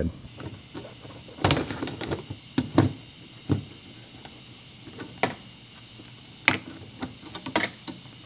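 A few scattered clicks and light knocks, about half a dozen, from hands handling wiring and plastic trim at a car's rear bumper.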